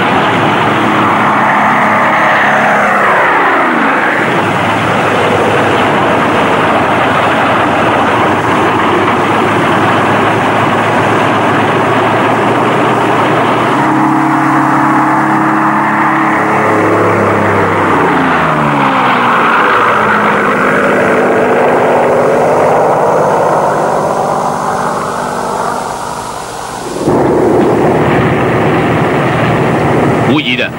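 Propeller aircraft engines flying past, the engine note dropping in pitch as the planes go by, twice, over a steady loud drone. About three seconds before the end the drone dips, then returns abruptly.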